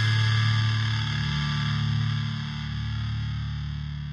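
A single distorted electric guitar chord, struck just before and left ringing, slowly fading away.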